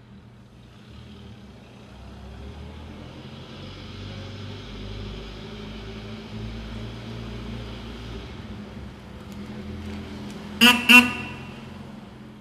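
1928 Isotta Fraschini Type 8A's straight-eight engine running as the car drives, growing louder over the first few seconds. Near the end come two short toots of the car's horn in quick succession.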